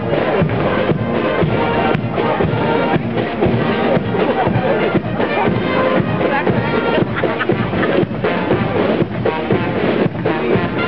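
Military marching band of brass and drums playing a march, with a steady drum beat under the brass.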